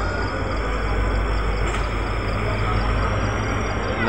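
Diesel-electric locomotive engine running with a steady low rumble.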